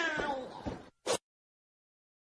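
A short animal-like call, several falling glides in pitch, dying away a little under a second in, followed by one brief sharp sound about a second in.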